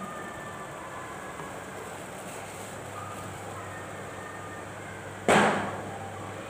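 Steady low hiss of room noise during a pause in speech. About five seconds in comes a sudden short rush of noise close to the headset microphone, fading within half a second.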